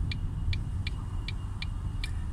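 Low, steady rumble of a car heard inside the cabin, with a turn indicator ticking evenly at about three ticks a second.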